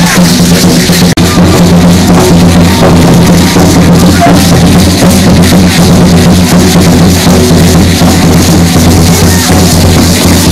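Very loud drumming for Aztec dance, a dense run of strikes with rattling percussion over a steady low drone.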